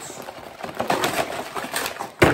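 Cardboard action-figure box being torn and pried open by hand: a run of irregular crackling, scraping and ticking of card.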